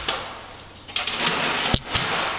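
Rustling handling noise that starts about a second in, with a single sharp click near the end.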